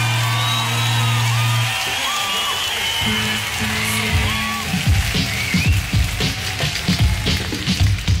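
Live rock band music: a held low bass note stops about two seconds in, then the band comes back in with guitar and a steady drum beat starting about five seconds in.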